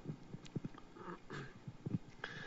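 Faint room noise with a few soft clicks in the first second and a brief faint murmur near the middle.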